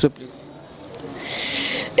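A person's long, breathy exhale or sigh, close on a handheld microphone, swelling for under a second in the second half.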